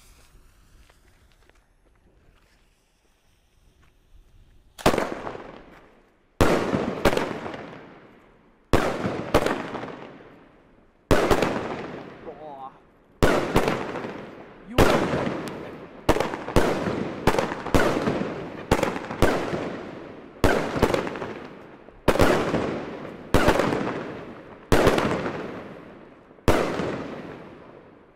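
Funke Argento Orchid 13-shot firework battery firing: after about five quiet seconds of fuse burn, a long series of sharp bangs, some in quick pairs, each fading away over a second or so, coming about one to three a second.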